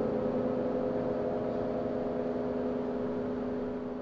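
A large suspended gong ringing on after a strike, several steady tones slowly dying away.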